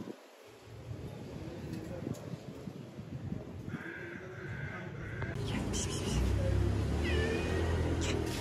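A kitten meowing: one long meow about halfway through and a shorter, falling meow near the end. A low rumble rises underneath in the last couple of seconds.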